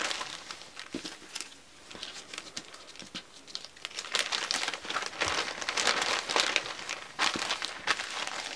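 Clear plastic zip-top bag crinkling as paper foundation templates and cut fabric pieces are handled and slid into it, in irregular bursts of crackle that grow busier about halfway through.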